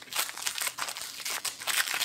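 Foil wrapper of a Pokémon card booster pack being torn open and crinkled by hand: a rapid, uneven run of crackles.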